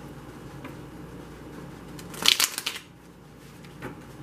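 A deck of tarot cards being shuffled by hand: a brief burst of rapid card flutter and slaps a little past halfway, with a faint tap of the cards before and near the end.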